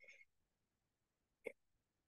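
Near silence, broken about one and a half seconds in by a single brief, faint throat sound from a woman whose allergies are making breathing hard.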